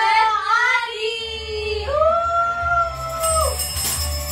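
A woman singing in a drawn-out, wavering line, holding one long note that falls away near the end, over background music with a low steady beat that enters about a second in.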